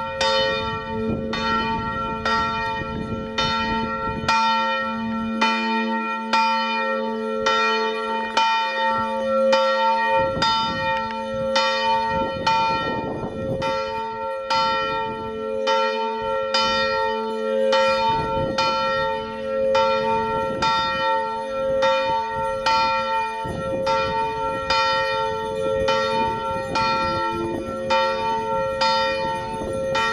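Church bells ringing steadily, struck about once a second, their ringing tones overlapping and sustained between strokes.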